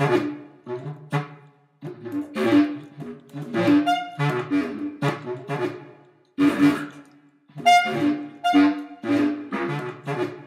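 Bass clarinet playing short, separated low notes and brief phrases in a three-part canon, the overlapping voices entering one after another, with short pauses between groups of notes.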